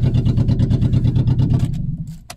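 Car engine idling with an even, rapid firing pulse, heard from inside the cabin; it cuts off suddenly near the end.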